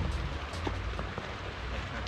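Steady outdoor hiss with a few faint, irregular taps: the footsteps of a runner on paving.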